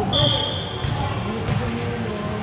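A single steady, high-pitched whistle blast lasting under a second near the start, typical of a referee whistling for the serve in volleyball.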